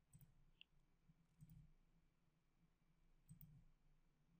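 Near silence, with a few faint computer mouse clicks, about three.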